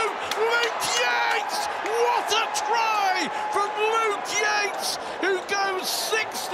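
A man's match commentary runs on without a break, over steady crowd and stadium background noise.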